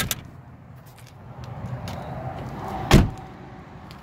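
A 2009 Nissan Note's rear passenger door being shut: one solid slam about three seconds in, the loudest sound here. A sharp click comes right at the start.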